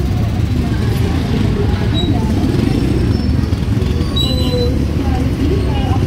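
Busy street traffic: the engines of nearby motorcycle tricycles and cars running in a steady low rumble, with people's voices in the background.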